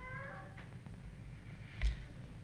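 A faint, high-pitched vocal call that bends up and down briefly at the start, over a low steady room hum, then a single dull thump near the end.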